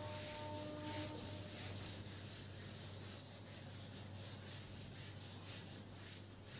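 Felt board eraser wiping a whiteboard, a scrubbing swish in repeated back-and-forth strokes.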